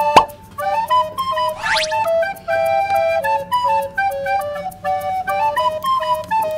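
Background music: a simple flute-like melody in stepping notes over a light steady beat. There is a sharp click just after the start and a quick rising whistle-like sound effect a little before two seconds in.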